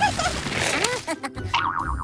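Cartoon boing sound effects over background music: short springy pitch arcs early on, then a quick wobbling twang near the end, as for a stretched vine.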